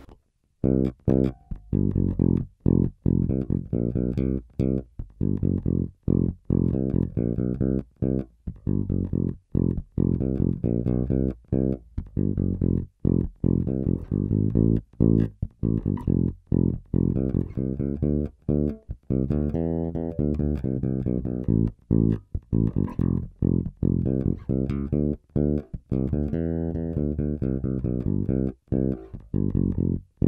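Warwick Rock Bass Corvette electric bass played fingerstyle on its bridge pickup alone, with the bass control fully up and the treble at half: a busy bassline of many short, separated notes.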